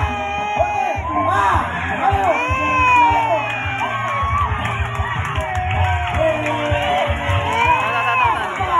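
Crowd shouting and cheering, many voices overlapping in rising and falling calls and whoops.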